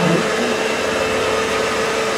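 Steady whirring of an electric motor with a constant hum underneath, unchanging throughout.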